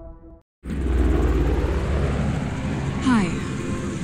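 Music fades out, and after a brief gap a steady low engine rumble starts. A man begins speaking over it near the end.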